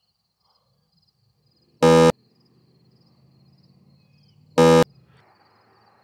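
Two short, loud, buzzy tones, about two and a half seconds apart, over a faint high chirping of insects that repeats evenly throughout.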